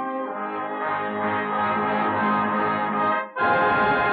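Orchestral music led by brass, with sustained chords over repeated low bass notes, on an old narrow-band recording. It breaks off briefly about three seconds in, and a fuller brass chord starts.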